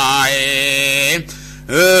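A man chanting a Buddhist sermon in the drawn-out, sung Northern Thai style. He holds one long vowel that wavers, then steadies, breaks off briefly, and starts the next syllable near the end.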